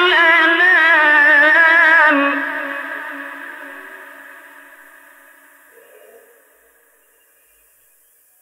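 Male Quran reciter chanting a long melodic phrase with a wavering vibrato, in the style of traditional tajwid recitation. The voice stops about two seconds in and its echo dies away slowly, leaving near silence for the last second.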